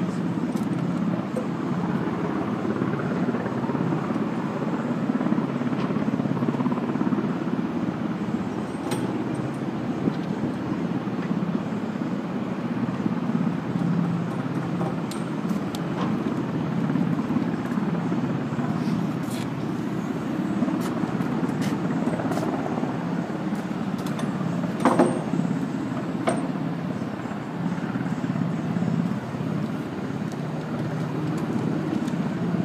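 Steady low rumble of running machinery, with a few scattered knocks and clicks, the loudest about 25 seconds in.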